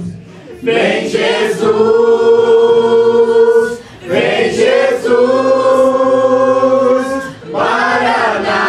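Youth worship group singing together into microphones, a young woman's voice leading. The song moves in long held notes, with short breaks about half a second in, about four seconds in, and near the end.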